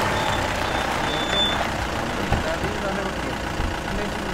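Police jeep engine running as it drives up and pulls in, with low voices under it.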